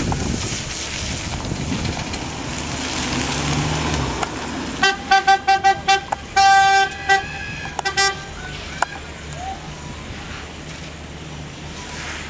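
An Audi A1's engine running and revving for about four seconds, the pitch rising near the end. Then a car horn tooting: a quick string of short beeps, one longer blast and a couple more toots.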